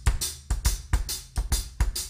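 Drum kit playing a shuffle groove: a traditional shuffle on the hi-hat over a busier bass drum pattern, in a steady run of evenly spaced strokes.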